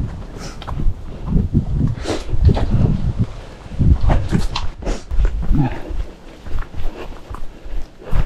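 A trail runner's footsteps on rough, lumpy grass and earth, coming as irregular thumps and rustles, with heavy breathing.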